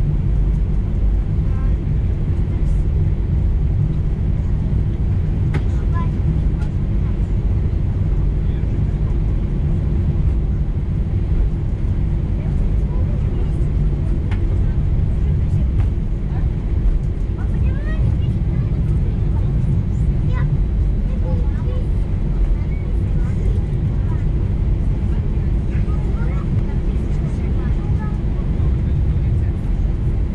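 Airbus A320-214's CFM56 engines at taxi idle, heard from inside the cabin as a steady low rumble with a faint steady hum.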